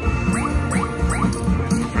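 Rich Little Hens video slot machine playing its bonus-round music, with a quick run of about four rising chime effects in the first second and a half.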